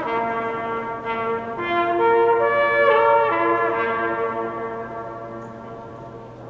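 Trumpet playing slow, held notes, with other held notes sounding together with it. It swells to its loudest about halfway through and fades out near the end.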